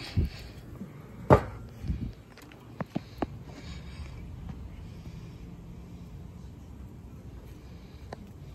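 Cast-aluminium PK grill lid shut with one sharp clank about a second in, followed by a few lighter clicks of metal on metal.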